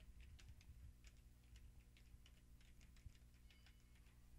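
Faint computer keyboard typing: about twenty light, irregular keystrokes as a name is typed out.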